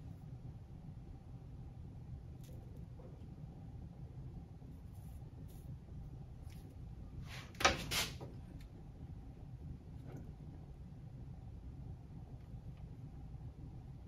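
Quiet room tone with a low steady hum and a few faint ticks. A little past halfway comes a brief, sharp scraping click in two quick parts: a tool handled against the rail while a rail joint on HO-scale track is soldered.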